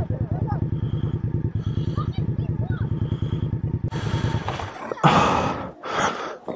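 Motorcycle engine running at idle with a rapid, even beat, which cuts out about four and a half seconds in. Just after, a loud crash and scrape as the rider and bike go down.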